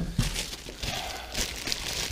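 Plastic packaging bags crinkling and rustling in irregular bursts as bagged motorcycle fairing parts are handled and pulled out of a cardboard box.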